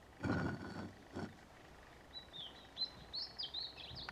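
Two short handling noises, the first louder, as a hand works at the base of a homemade fish smoker around its air inlet. Then a small songbird sings a quick phrase of high chirps and falling whistles over the last two seconds.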